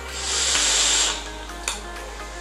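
Breathy hiss of vaping, air and vapour drawn through and blown from an e-cigarette, lasting about a second. It fades under faint background music, with one short click near the end.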